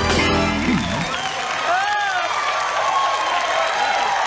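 Band music stops about a second in, leaving studio audience applause and cheering.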